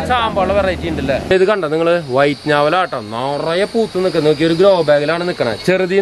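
Speech: a man and a woman talking in Malayalam.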